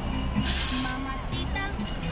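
Christmas music playing over an FM car radio tuned to the light show's broadcast. About half a second in, a brief loud hiss cuts across it for roughly half a second.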